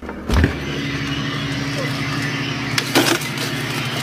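A dull thump just after the start, then a steady low mechanical hum, with a couple of sharp clicks about three seconds in.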